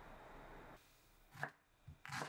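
Kitchen knife cutting through an onion onto a wooden cutting board: one sharp chop about one and a half seconds in and a lighter knock just before the end. A soft steady hiss before them cuts off suddenly.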